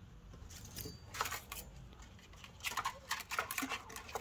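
Spark plug wires and multimeter test leads being handled on a workbench: a scattering of light clicks and rattles, busier in the second half.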